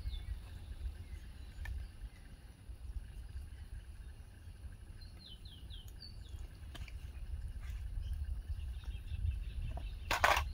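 Quiet outdoor ambience with a steady low rumble and a few faint clicks; about five seconds in, a bird gives three or four short falling chirps.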